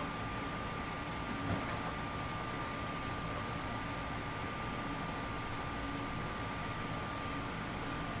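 Steady air-conditioner noise filling a small room, with a thin constant whine.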